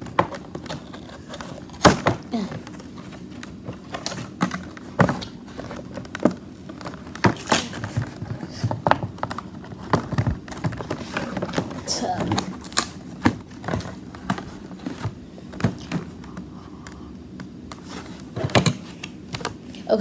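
Cardboard packaging and plastic capsule balls being handled while a toy box is opened: irregular clicks, taps and knocks over a low rustle.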